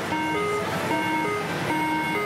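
Reno pachislot machine playing its electronic bonus melody, a simple tune of held beeping notes, as three red 7s line up on the reels for a big bonus. The steady din of a pachislot hall runs underneath.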